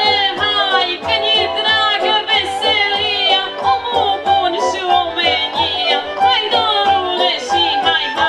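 A woman singing a Romanian folk song live into a stage microphone, her voice full of gliding ornaments, over a folk band with fiddle and a steady bass beat.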